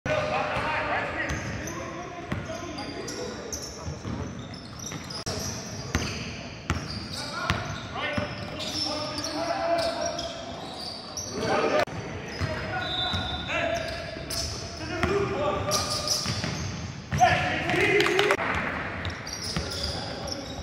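A basketball being dribbled and bouncing on a hardwood gym floor during live play, with repeated sharp bounces. Indistinct voices of players call out over it, all echoing in a large gym.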